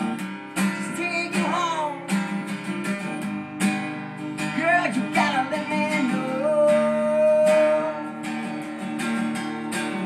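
Acoustic guitar strummed and picked with a steady rhythm, carrying a song through a passage without words.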